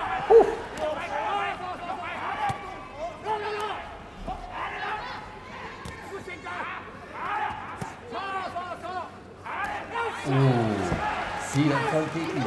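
Raised, shouting voices in an arena hall, with sharp thuds of gloved kickboxing strikes landing now and then; the loudest hit comes about half a second in.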